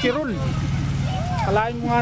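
A vehicle engine running close by, a steady low hum, with voices talking over it at the start and again near the end.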